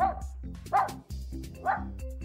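A dog barking three times, short barks a little under a second apart, over children's background music.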